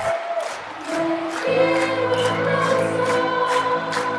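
A children's choir singing held notes, with a fuller sustained chord coming in about a second and a half in.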